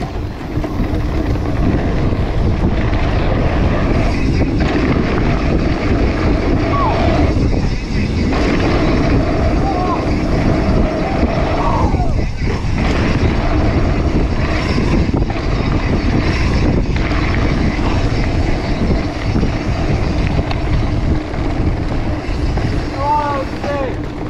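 Wind rushing over the camera microphone and knobby mountain-bike tyres rumbling on a dirt trail during a fast ride, with the bike knocking and rattling over bumps.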